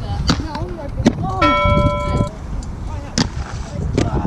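Aggressive inline skates knocking on a concrete skatepark ledge: three sharp knocks, near the start, about a second in and after three seconds, as the skater lands and grinds a trick. Voices sound in the background, and a steady held tone lasts about a second in the middle.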